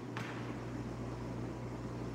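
A pause in the speech filled by room tone: a steady low hum with a faint even hiss, and a faint click just after the start.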